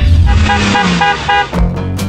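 The tail of a TV intro jingle: a quick run of about five short car-horn toots as a sound effect over the music, then a lower held tone near the end.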